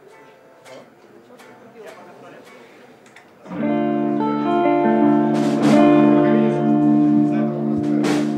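Electric guitar through an amplifier, played quietly at first. About three and a half seconds in, a loud sustained chord rings out and holds, its notes ringing steadily to the end.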